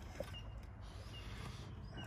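Faint outdoor background: a steady low rumble with short, high chirps repeating about every half second.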